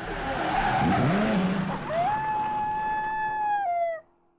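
Sound effects for a logo animation: a tyre screech with an engine revving up. About two seconds in comes a single long howl that rises, holds steady and drops at the end before cutting off abruptly.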